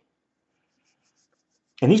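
Near silence for almost two seconds, broken only by a few faint, soft high ticks, then a man's voice starts speaking again near the end.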